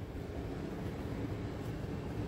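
Steady low background rumble of room noise, with no distinct event in it.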